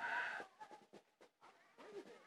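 A boy's hard, breathy open-mouthed exhale ("haaah") blown out to show his breath in the cold air, lasting about half a second, followed by quiet with a few faint clicks.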